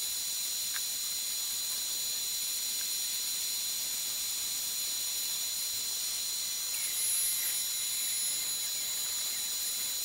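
DeWalt 611 router on a CNC machine carving wood with a V-bit, with shop-vac suction drawing through the dust shoe: a steady high-pitched whine over hiss, swelling slightly about seven seconds in.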